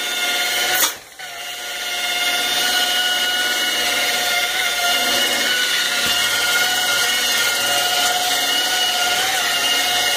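Electric rotary polisher with a foam pad running against a black enamel stove top, a steady motor whine as it buffs off baked-on buildup. About a second in there is a click and the sound drops out briefly, then it winds back up to a steady whine.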